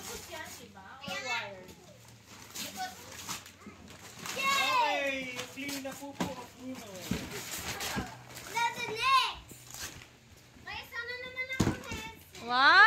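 Young children's high-pitched voices calling out and chattering in a room, with a few short knocks and clicks between the calls.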